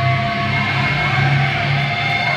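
Live metal band playing through a club PA, loud: distorted electric guitars and bass hold sustained, ringing chords, with thin high tones held steadily above them.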